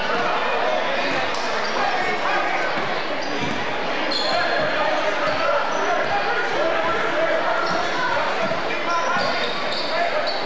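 Crowd chatter filling a reverberant gymnasium, with a basketball being dribbled on a hardwood court. A few short, high sneaker squeaks on the floor come about four seconds in and again near the end.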